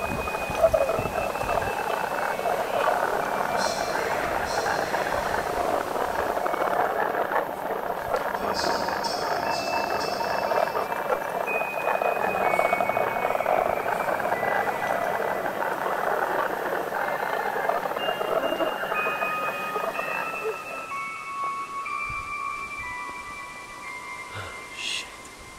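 Horror film score: a dense, hissing noise drone with thin, high, chime-like notes held above it, stepping from one pitch to another. Near the end the noise drone fades away, leaving only the high held notes.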